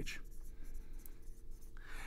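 Dry-erase marker writing on a whiteboard: a run of short, faint strokes.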